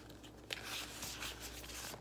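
Faint rustling of clear plastic binder pouches and paper being handled, with a light click about half a second in.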